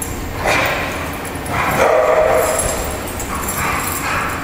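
Dogs barking during rough play, in three outbursts: about half a second in, a longer one around two seconds in, and another near the end.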